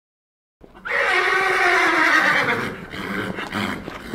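A horse neighing loudly for about two seconds, starting about a second in, its pitch falling, then trailing off into quieter, uneven sound.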